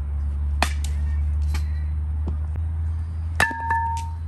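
Metal softball bat hitting pitched softballs: a sharp crack about half a second in, then near the end a louder hit that rings with a metallic ping, over a steady low rumble.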